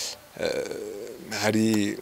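A man speaking. A short hiss at the start, then a quieter, rough, low drawn-out hesitation sound, then a voiced syllable near the end.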